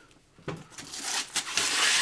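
Thin plastic protective film and wrap rustling and rasping as it is pulled and handled on a new monitor, starting about half a second in and growing louder near the end.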